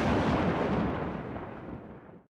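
Explosion sound effect used as a transition: a loud noisy blast that fades away steadily.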